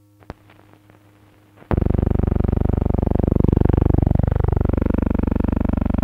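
A faint low hum with a single click, then, nearly two seconds in, a loud buzzing electronic tone starts abruptly and holds, with slow sweeping shifts running through it.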